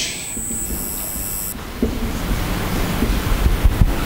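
Dry-erase marker writing on a whiteboard, heard through a handheld microphone over a steady hiss, with a few low bumps of microphone handling.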